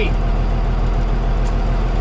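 Converted school bus's engine and road noise heard inside the cab: a steady low rumble, with a short click about a second and a half in.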